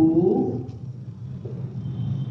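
A woman's voice drawing out a single spoken Hindi syllable; it fades out less than a second in. A low steady hum continues under it.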